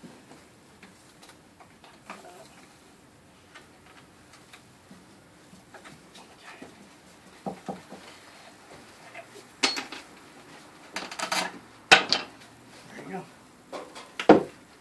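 Wooden knocks and clatter as the boards and beam of a large friction fire-drill rig are handled and fitted. It is quiet for the first several seconds, then a series of sharp, separate knocks comes over the second half.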